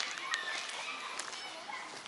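Children's voices and chatter at a distance, faint and without clear words.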